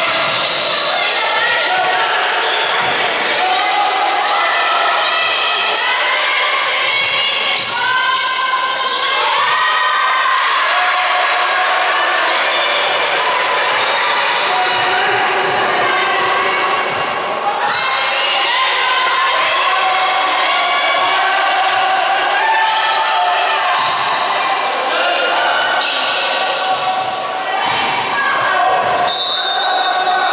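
A basketball bounces repeatedly on a hardwood court during live play, amid players' calls and the chatter of people courtside. It all echoes in a large sports hall.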